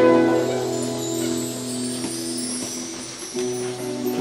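Live acoustic music from a small ensemble with guitar: a slow instrumental passage of long held notes that fade away about three seconds in, then new notes come in near the end.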